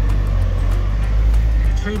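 Steady low rumble of a campervan driving, engine and road noise heard from inside the cab. A man's voice starts right at the end.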